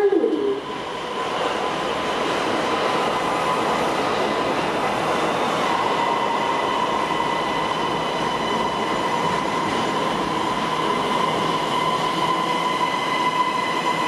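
Siemens Inspiro metro train running past along the rails: a steady rolling rumble with a held high whine on top that grows stronger about six seconds in.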